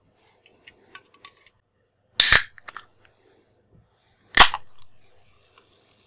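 A Coca-Cola can being handled and opened: a few light clicks, then two sharp, loud cracks of the aluminium can's ring-pull and escaping gas about two seconds apart. After the second, a faint fizz of the carbonated drink carries on.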